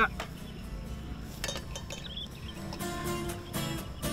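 Background music that comes in about three seconds in, with held instrumental notes over a low outdoor background.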